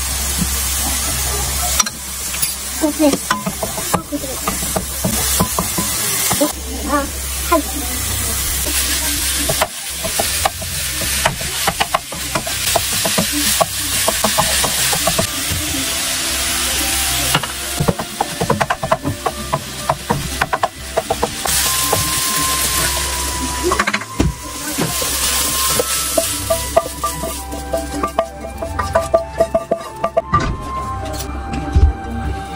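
Diced onions and minced meat sizzling in a nonstick frying pan, stirred with a wooden spatula that scrapes and clicks against the pan throughout.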